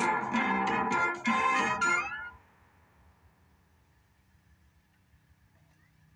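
Short production-logo sting for Stretch Films, played from a television: about two seconds of pitched, music-like sound in two parts with a brief dip just past one second. It stops suddenly and leaves only the television's faint hum.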